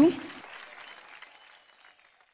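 Audience applause fading steadily away to silence over about two seconds.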